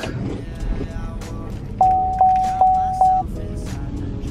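Car dashboard warning chime: four even dings at one pitch, about 0.4 s apart, the car's low-fuel warning. Background music plays underneath.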